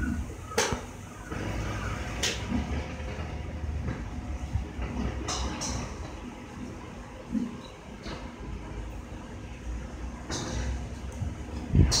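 Golf club heads striking balls at a driving range: several sharp cracks at irregular intervals, a few seconds apart, over a steady low rumble.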